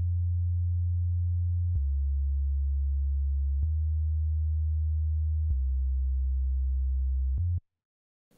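Synth bass from a Nexus preset playing four plain, straight held notes in a row, each about two seconds long. The tone is deep and nearly pure, with a faint click at each note change. The line follows the root notes of the chord progression and stops shortly before the end.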